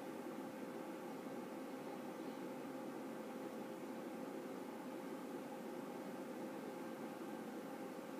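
Steady low hiss of room tone with a faint constant hum; no music from the TV can be heard.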